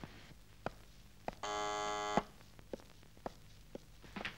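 An electric buzzer sounds once, a steady buzz just under a second long, between a few footsteps about half a second apart.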